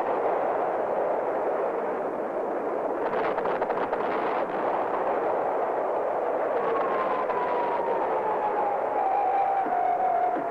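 Jet engine noise: a steady roar, with a whine that comes in past the middle and falls slowly in pitch.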